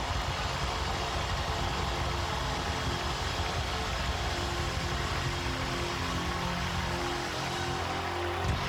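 Live rock band playing loud at the close of a song, distorted electric guitar and drums holding out over a dense wash of sound, with a crowd cheering and applauding.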